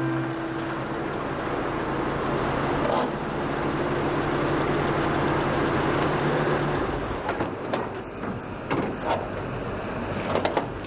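A sedan taxi pulling up and stopping, its engine and tyres giving a steady noise that dies away about seven seconds in. Then a few sharp clicks and knocks as the driver's door is unlatched and opened.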